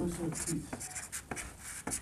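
Whiteboard marker writing numbers on the board: short, scratchy strokes with a few light taps of the tip.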